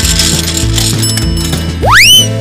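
Cartoon sound effect of a gumball machine's crank ratcheting round over background music with a steady beat, ending with a fast rising whistle as the gumball comes out.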